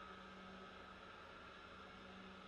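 Near silence: a faint steady hum.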